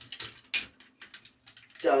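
Hard plastic parts of a Transformers Devastator toy figure and its upgrade-kit piece being handled and pushed together: a run of small sharp clicks and knocks, one louder click about half a second in, as a piece is pegged into its slot.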